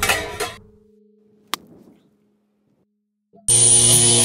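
Stock sound effects: a crash fading out at the start, a single click about a second and a half in, then near the end a loud, harsh, steady buzz lasting about a second.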